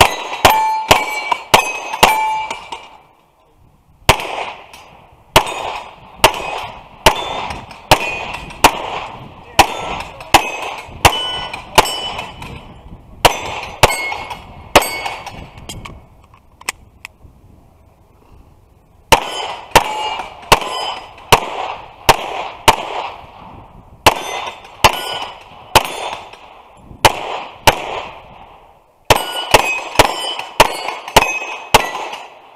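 Pistol shots fired in quick strings, about two a second, each followed by the ring of a steel target plate being hit. The firing stops for about a second and a half early on and for about three seconds a little past the middle, then resumes.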